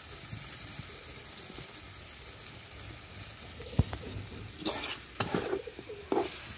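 Meat frying in masala in a black wok, a steady sizzle. Nearly four seconds in comes one sharp knock, then a metal spatula stirs and scrapes around the pan in several strokes near the end.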